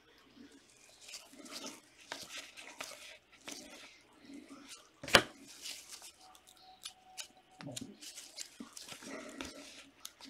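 Trading cards being handled by gloved hands: a run of light rustles, slides and ticks as cards are flipped and separated from a stack, with one sharp snap about five seconds in, the loudest sound.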